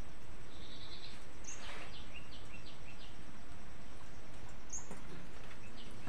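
Steady background hiss with faint, short high-pitched animal calls scattered through, including a quick run of falling chirps a couple of seconds in.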